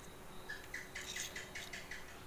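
Metal spoon scraping aloe vera gel from a cut leaf into a plastic jar: a quick run of light scraping clicks, about six a second, starting about half a second in.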